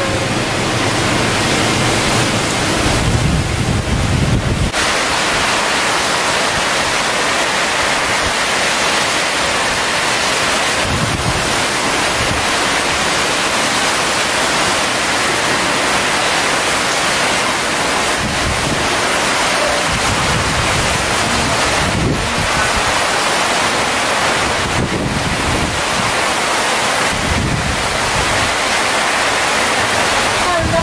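Super typhoon wind and heavy rain blowing steadily at typhoon force, about 225 km/h. Gusts hit the microphone as low rumbles every several seconds, the strongest a few seconds in.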